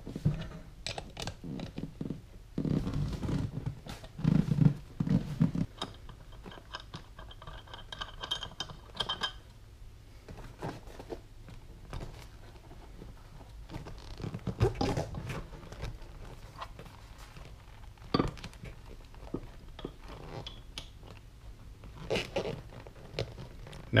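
Hand tools and hardware at work: a socket wrench tightening the bolts of a backrest bracket, with scattered clicks, scrapes and knocks of metal parts being handled, and louder knocks about four to five seconds in.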